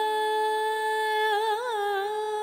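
A high voice humming one long held note, with a brief wavering turn near the end, as part of the background score.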